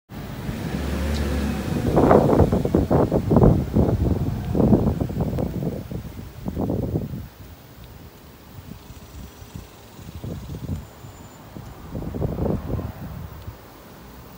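Wind buffeting the phone's microphone in gusts, with a low rumble. It is loudest through the first half and comes back in weaker gusts near the end.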